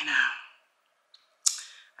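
A woman's voice finishes a word. After a pause comes one sharp click that trails off briefly.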